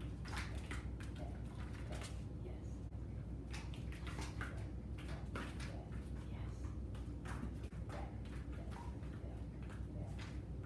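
A dog's feet tapping and padding irregularly as it steps slowly through PVC cavaletti poles on foam mats. A steady low hum runs underneath.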